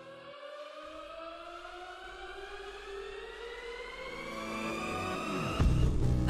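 A slow electronic rising sweep, several pitches climbing together and growing louder for about five and a half seconds. Near the end, loud music with a heavy bass comes in abruptly as the next song starts.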